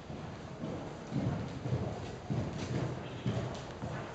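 Horse's hooves cantering on a sand arena floor: a run of dull, muffled thuds about two a second, louder from about a second in.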